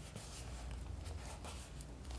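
Hands rubbing a glued paper cutout flat onto a page: paper scuffing and rustling under the fingers in a quiet run of short strokes.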